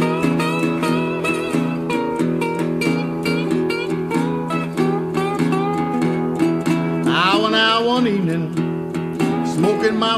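Instrumental passage of a country song with acoustic guitar playing. About seven seconds in, a wavering high sound glides up and then back down.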